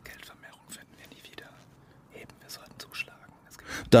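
A group of people whispering quietly together, a hushed huddle of voices with no words clearly spoken aloud.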